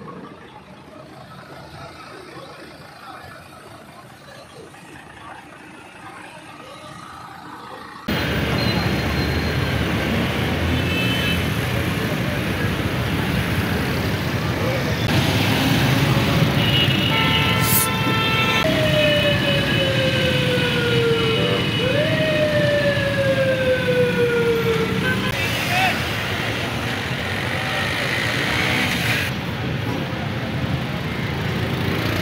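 Busy road traffic noise, louder from about a quarter of the way in. About halfway through a vehicle horn sounds briefly, then a siren wails in two long falling sweeps.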